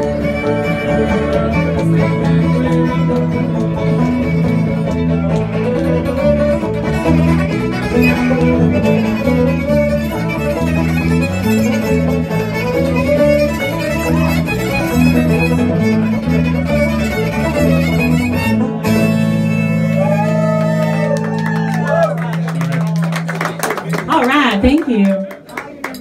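A string band playing live with no singing: fiddle over acoustic guitar, banjo and electric bass. About 19 seconds in the rhythm stops and a low note is held while the fiddle plays sliding notes, and the tune ends near the close.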